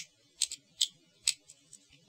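Light, irregular clicks of hard plastic parts knocking together as a 1/100 Zollidia plastic model kit and its beam rifle are handled: about six short clicks over two seconds.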